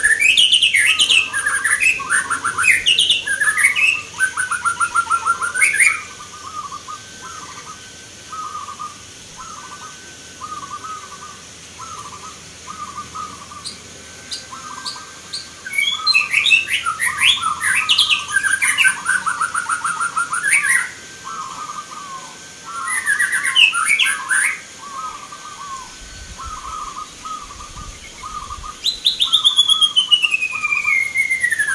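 Many caged zebra doves (perkutut) singing at once: a steady run of short, staccato cooing notes, with three louder clusters of quick, rapidly bending notes at the start, in the middle and a little later, and a falling whistled note near the end.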